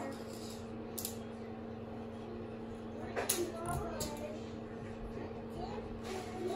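A few soft clicks and knocks as a juicer packer presses cranberries down in a glass jar of honey, to push out the fermentation gas, over a steady low hum.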